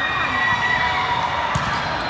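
Spectators shouting and cheering during a volleyball rally, with one sharp smack of a hand on the volleyball about one and a half seconds in.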